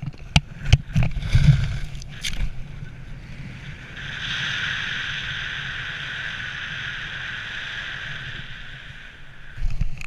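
Wind rushing over a helmet-camera microphone during a bridge BASE jump: sharp knocks and buffeting in the first couple of seconds as he leaves the bridge, then a steady rush of air under canopy from about four seconds in. A few heavy thumps near the end as he comes down onto the snow.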